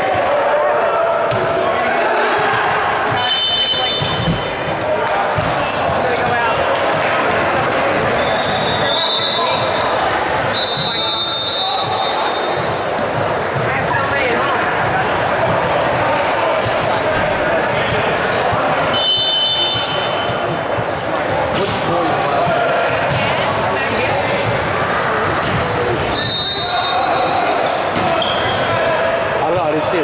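Echoing gymnasium during a volleyball match: steady chatter and calls from players and spectators, with the sharp smacks and bounces of balls being hit and several short high-pitched squeaks.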